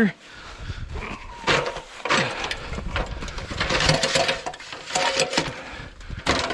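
Footsteps crunching in fresh snow, with irregular knocks and rustles.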